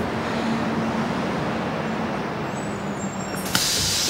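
Bus engine idling with a steady hum, then a sudden loud hiss of released compressed air about three and a half seconds in from the bus's air system.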